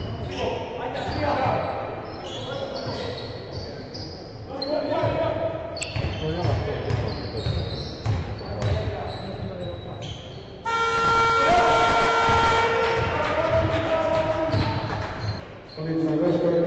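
Basketball being dribbled on a wooden gym floor, with sneakers squeaking and players' voices. About ten seconds in, a loud horn suddenly sounds and holds for several seconds over the play.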